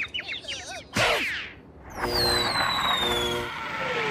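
Cartoon sound effects: quick chirping tweets, as for a character seeing stars after a knock on the head, then a sharp hit about a second in, then a long high falling whistle.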